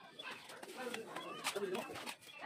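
People's voices talking in the background, with one short sharp tap about one and a half seconds in.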